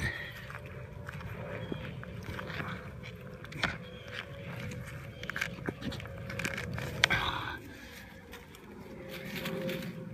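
A hand digging in mud among dry grass and stems: irregular scraping and crackling, with a few sharper snaps, the loudest about seven seconds in.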